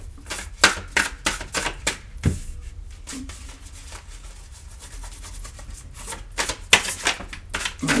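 A deck of oracle cards being shuffled by hand, a quick irregular run of sharp card clicks. The clicks are busiest in the first couple of seconds, thin out in the middle and pick up again near the end.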